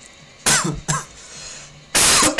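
A man coughing twice, short and sharp, the first about half a second in and the second about half a second later.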